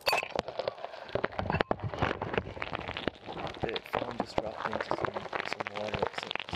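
Rustling and rapid, dense clicking of handling noise as the camera is picked up and moved about.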